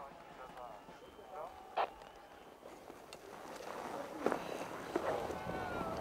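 Faint background voices, quiet at first and louder over the last two seconds, with a few sharp clicks or knocks.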